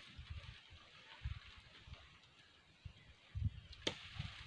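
Wind buffeting the microphone outdoors in irregular low thumps over a faint steady hiss, with one sharp click just before the end.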